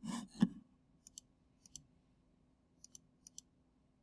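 Computer mouse clicking: four quick pairs of light clicks, each pair like a double-click, spread across the few seconds.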